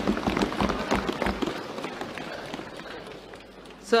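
Many members of parliament thumping their desks in applause, a dense patter of knocks that fades out over the first two or three seconds.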